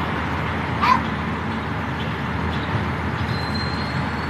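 Steady road and engine rumble heard from inside a slowly moving vehicle, with one short high-pitched yelp-like cry about a second in.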